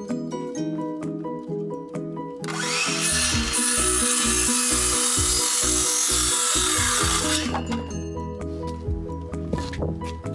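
A circular saw cutting through a wooden board for about five seconds, starting between two and three seconds in and stopping suddenly, over background music with a steady beat.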